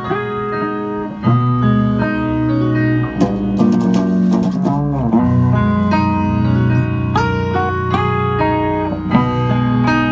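A band playing a slow, melodic passage: keyboard notes at first, joined about a second in by electric guitar and bass guitar, with sustained ringing notes. About five seconds in, the pitch dips and comes back up.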